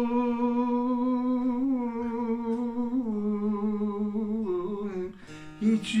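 An elderly man holding one long, wavering sung note in a Turkish folk song, accompanied by a bağlama (long-necked saz); the note steps down in pitch about halfway and again near the end. Just after 5 seconds the voice drops out briefly and a few plucked saz notes sound before the singing resumes. The voice is a little off pitch, sung with a sore throat.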